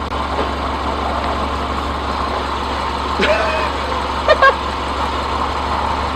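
Subaru Forester engine idling steadily. A couple of short, brief voice-like sounds come about three and four and a half seconds in.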